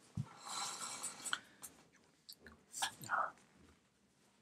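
A person's faint breathing, with small clicks and rustles.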